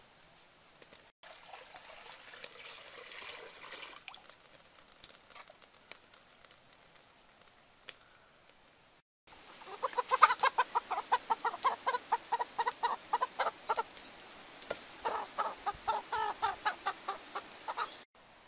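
A chicken squawking in rapid repeated calls, about five a second, in two long runs in the second half, while it is held down by hand before slaughter.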